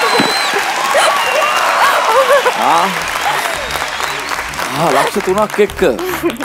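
Studio audience applauding, with voices calling out over the clapping; the applause dies down in the second half.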